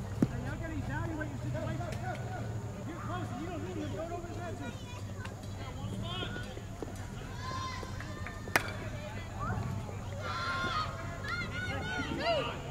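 Open-air baseball practice: distant voices calling across the field, with two sharp knocks of a baseball, one just after the start and a louder one about eight and a half seconds in.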